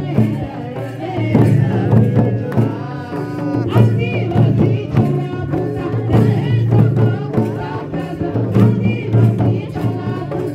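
A woman singing an Oraon (Adivasi) folk song in a strong, wavering voice, accompanied by a barrel drum beaten in a steady rhythm.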